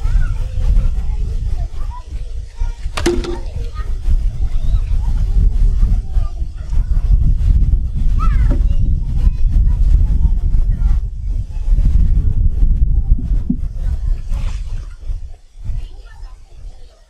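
Wind buffeting the microphone, a loud uneven low rumble, with faint voices of people nearby and a single sharp knock about three seconds in.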